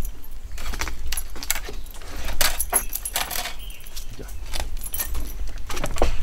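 Irregular clicks, knocks and a jangling rattle as a wooden pole gate on a boardwalk is handled and swung open by hand.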